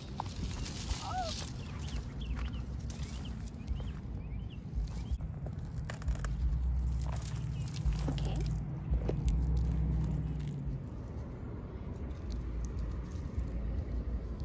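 Red-handled pruning shears snipping and crunching through a dried sunflower stalk in a few scattered clicks, over a steady low rumble of wind on the microphone that is strongest in the middle.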